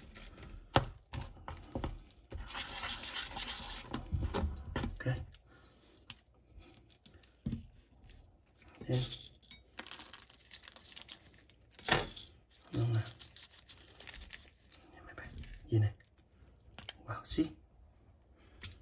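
Kitchen handling sounds: metal tongs clicking against a glass bowl and the frying pan, and pumpkin seeds being dropped onto a caramel-coated cake, with a rustling, crinkling stretch of about two seconds early on. A few short murmured voice sounds come in between the knocks.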